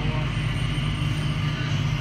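Cabin noise of the Changi Airport Skytrain, a rubber-tyred automated people mover, running along its guideway: a steady low hum at an even level.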